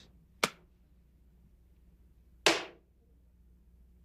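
A short sharp click, then a louder sharp slap about two seconds later, as a leather police badge wallet is handled, snapped shut and put away or set down.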